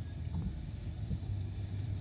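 Steady low rumble of a car driving along a street, heard from inside the cabin.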